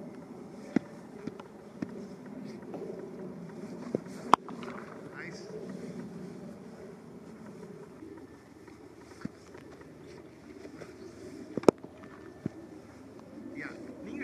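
Gusty wind rumbling steadily on the microphone, broken by several sharp knocks. The loudest knocks come about four seconds in and again near the end.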